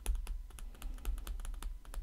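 Stylus tapping and scratching on a tablet screen while handwriting a word: a quick, irregular run of light clicks.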